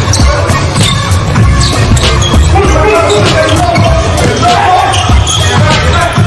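A basketball being dribbled on a hardwood court, with background music playing over it.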